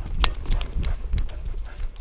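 A dog's paws and claws hitting the floor quickly as it runs, heard through a camera strapped to its back: irregular sharp clicks and thumps, about five a second.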